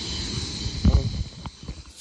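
Zip-line trolley running along its steel cable: a steady hiss with a faint high whine. A thump comes about a second in, and the sound dies away soon after.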